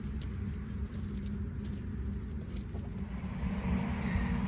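Farm tractor engine idling, a steady low rumble.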